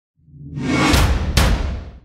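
Intro logo sting: a swelling whoosh over deep bass, with two sharp hits about a second in, a little under half a second apart, fading away at the end.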